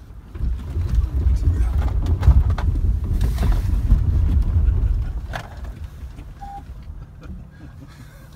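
A Range Rover driving briskly over a rough gravel track, heard from inside the cabin: a loud, uneven low rumble of tyres and suspension with scattered knocks, easing to a quieter rumble after about five seconds.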